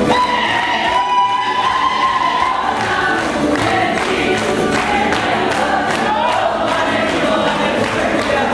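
Folk singers in a mixed group singing, opening on one high held note of about two seconds, then carrying on in a shifting melody. A tamburica ensemble of plucked tamburas and a berde bass plays along.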